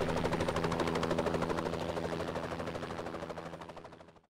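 Helicopter rotor chopping in a fast, even beat over a steady low hum, fading away to silence at the end.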